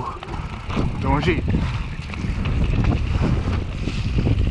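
Low rumble of wind buffeting the microphone, with a person's voice calling out briefly about a second in.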